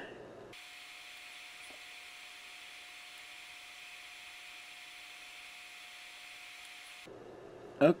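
Faint, steady hiss with a faint constant hum, and no test tone heard. It starts abruptly about half a second in and stops abruptly about a second before the end.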